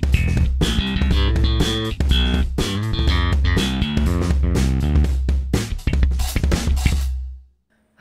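UJAM Virtual Bassist SLAP software slap bass playing a phrase on a newly chosen sound preset, with sharp, percussive note attacks over a deep, steady bass. Toward the end the sound becomes more tapped than slapped. The phrase stops shortly before the end.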